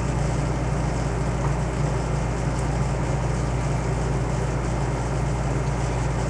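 Steady low hum with an even hiss over it, unchanging throughout, with no distinct events.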